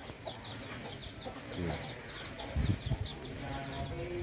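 A bull eating wet feed mash (kombor) from a concrete trough, with a louder burst of low munching and slurping a little past the middle. Behind it, short high peeping calls of chickens or small birds repeat about three times a second.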